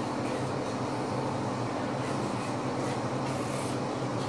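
Steady rushing background noise with a low hum underneath, holding an even level throughout.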